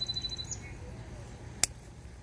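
Garden snippers cutting through a pepper stem: one sharp snip about a second and a half in.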